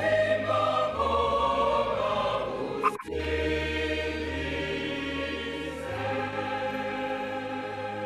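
Choir singing a slow offertory hymn in held chords over a low bass part, the notes changing about once a second. There is a sharp click and a brief dropout about three seconds in.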